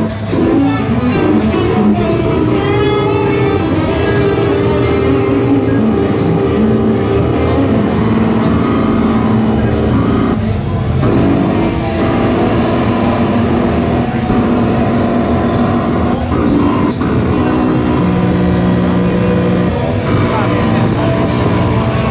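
Metasonix S-1000 vacuum-tube synthesizer played from its keyboard: sustained, buzzy oscillator notes that shift in pitch and tone as the panel knobs are turned. The sound is a bit noisy.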